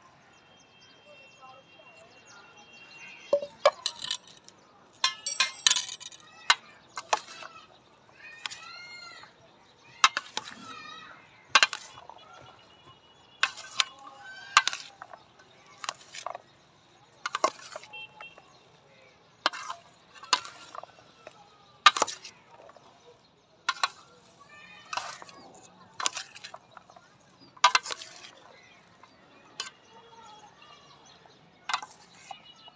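Metal spoons clinking against a stainless steel bowl while chopped fruit is tossed and mixed, a sharp clink about every second or so with the soft shuffle of fruit pieces between.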